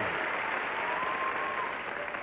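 Studio audience applauding steadily, with one faint drawn-out high call rising and falling over it about halfway through.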